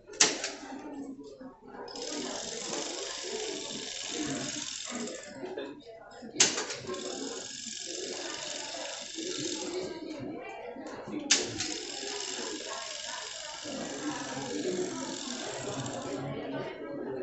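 People talking indistinctly, broken by three sharp knocks or clicks about five seconds apart.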